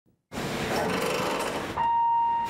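Car assembly plant ambience: a steady hum of machinery and air, with a steady electronic beep starting near the end.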